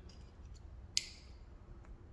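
A single sharp click about halfway through: a plastic wiring-harness connector snapping home on the crank sensor of a Toyota 3S-GE Beams engine.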